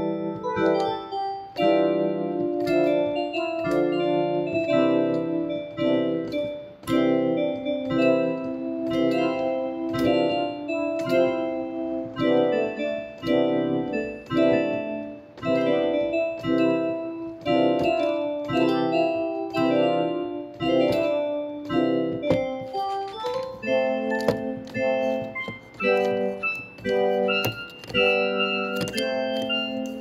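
Piano music, with chords and melody notes struck at an even, unhurried pace.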